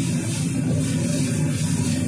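Steady rushing noise of a restaurant gas wok range running at high flame while noodles are stir-fried in the wok.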